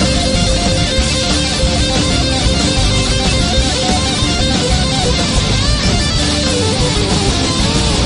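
Electric guitar solo played live with a rock band: quick runs of notes, with bent notes near the end, over strummed acoustic guitars.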